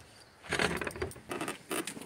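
Light, irregular clicking and jangling, like keys and small metal parts, as a moped is moved by hand over gravel. There is no engine running. The clicks begin about half a second in.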